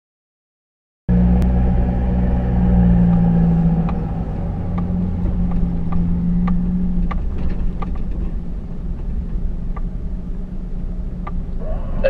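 A Jeep Wrangler's engine running as it creeps along a sandy track: a steady low hum with scattered light clicks and rattles. It starts abruptly about a second in.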